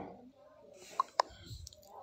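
Two short, sharp clicks about a fifth of a second apart, in a quiet room.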